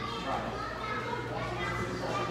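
Many children's voices chattering and calling out at once in a large hall, no one voice standing out, over a steady low hum.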